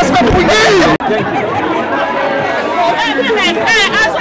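Several people talking at once, a gathering's chatter close to the microphone. The sound cuts out for an instant about a second in.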